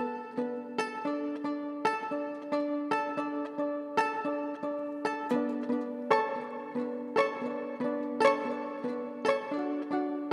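Instrumental acoustic music: a strummed acoustic guitar and a violin plucked pizzicato, playing plucked chords in a steady rhythm.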